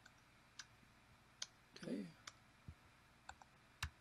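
Faint computer mouse clicks and keyboard keystrokes, about seven sharp single clicks at irregular intervals, made while setting values in a software dialog. A brief murmured voice sounds about two seconds in.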